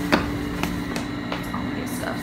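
A steady low hum with a sharp knock just after the start and several fainter clicks about every half second.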